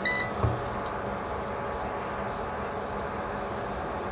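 An electric cooktop gives one short, high electronic beep, followed about half a second later by a low thump, then a steady electrical hum with a faint whine runs on underneath.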